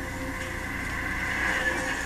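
Steady wind noise on the microphone.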